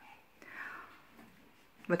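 A short, faint breathy sound from a woman, without voice, about half a second in. Speech returns near the end.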